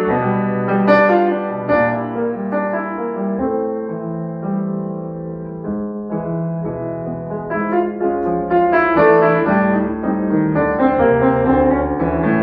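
Grand piano played solo, a flowing run of notes and chords ringing over sustained bass. It softens through the middle and builds louder again about two-thirds of the way through.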